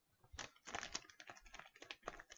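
Faint, rapid run of small clicks and taps, starting about a third of a second in.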